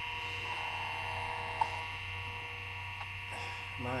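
Steady hum and whine of an open PC running with an old Seagate ST-4038 MFM hard drive spinning, several constant tones held throughout. A single short click about one and a half seconds in.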